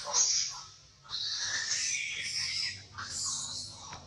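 Long-tailed macaques screaming during a fight, in three long, shrill bursts with short breaks between.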